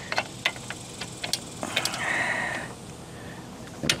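Light metal clicks and taps from a steel support rod being handled at the patio railing hardware, with a short scrape a little under two seconds in as the rod slides against its bracket.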